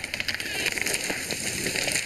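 Axe-felled pine tree coming down: a dense crackle of snapping and brushing branches that builds about half a second in.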